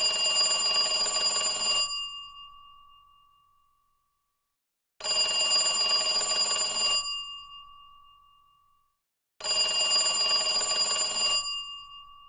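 A telephone ringing three times, each ring lasting about two seconds and fading away, the rings about five seconds apart.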